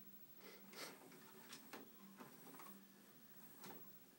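Near silence with about seven faint, irregular clicks over a low steady hum.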